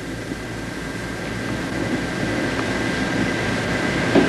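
Steady hiss and low hum of an old film soundtrack, with a faint high steady whine, slowly growing a little louder.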